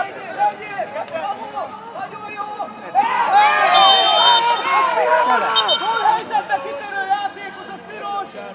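Several people shouting across a football pitch, their voices overlapping, rising to a loud burst of shouting about three seconds in that lasts a few seconds before easing off.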